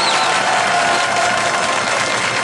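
Audience applauding, a steady even clapping.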